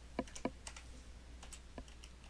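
Computer keyboard keys being typed: about half a dozen irregularly spaced keystrokes, the firmest two in the first half second, over a faint steady low hum.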